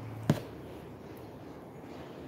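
A single sharp click about a third of a second in, over quiet, steady room noise.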